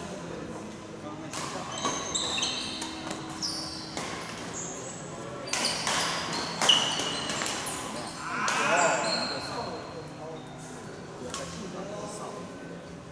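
Badminton rally on an indoor court: sharp racket hits on the shuttlecock, players' quick footsteps and shoe squeaks on the court floor, echoing in a large hall, busiest between about one and nine seconds in.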